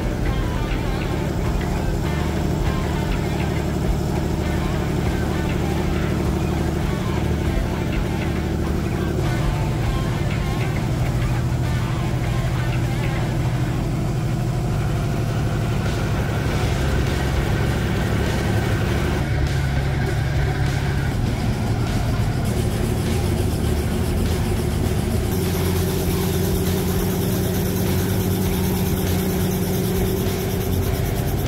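Helicopter engine and rotor running steadily on the ground, with background music laid over it.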